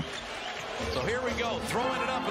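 Basketball TV broadcast audio playing quietly underneath: a commentator's voice over the low noise of an arena crowd.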